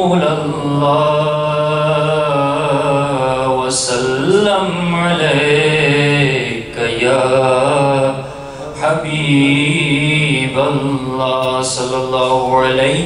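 A man's unaccompanied religious recitation, chanted melodically into a handheld microphone in long, held, ornamented phrases, with a short pause near nine seconds in.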